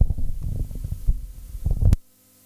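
Handling noise on a handheld microphone carried while walking: irregular low thuds and rumble, ending in one sharp click near the end.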